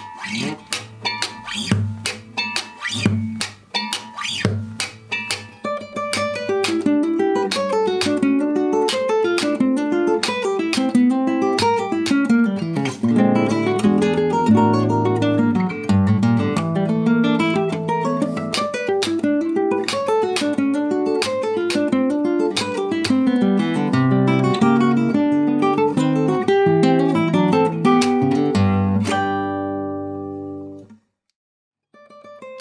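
Nylon-string classical guitar played solo: for about the first six seconds sharp percussive strokes with short clipped notes, then a continuous flow of fast plucked notes and chords. A final chord rings out and fades at the end.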